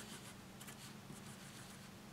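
Faint, short strokes of a Sharpie felt-tip marker on paper as a dashed line is drawn, over a low steady hum.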